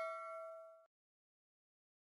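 Ringing tail of a bell 'ding' sound effect, a chime with several steady tones, fading out and then cutting off abruptly to silence just under a second in.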